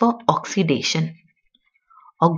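A woman's voice speaking for a little over the first half, then a pause with a few faint clicks.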